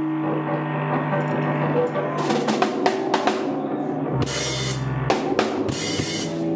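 A live three-piece rock band of bass, electric guitar and drum kit playing: a low note is held throughout, the drums come in about two seconds in, and cymbals crash twice near the end.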